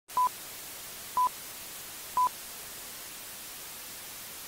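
Intro sound effect: three short, identical beeps, one a second, like a countdown, over a steady hiss of TV static.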